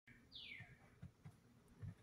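Faint single bird chirp, one high call falling in pitch, followed by a few soft low thumps, the loudest just before the end.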